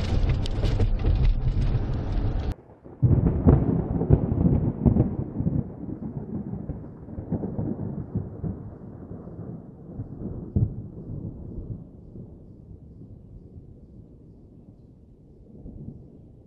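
Patrol car cabin noise on a body camera, cut off abruptly about two and a half seconds in. Then a low rolling rumble like thunder, with several louder swells, slowly fading away.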